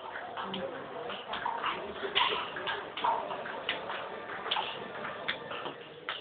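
Table tennis rally: the ball clicking off the paddles and bouncing on the table, a sharp tick about two to three times a second at an uneven pace.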